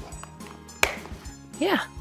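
Clear plastic carry case closed and latched: one sharp plastic click a little under a second in as the lid snaps shut over the packed contents.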